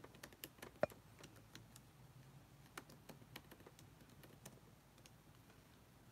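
Faint typing on a computer keyboard: irregular key clicks, one louder than the rest about a second in, dying away shortly before the end.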